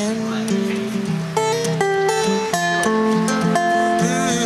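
Acoustic guitar played solo, strummed chords in an instrumental passage, the chord changing several times.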